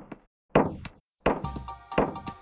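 Electronic casino-game sound effects. A knock fades at the start, a thud with a falling pitch sounds about half a second in, and from just past a second come percussive hits with a short ringing chime.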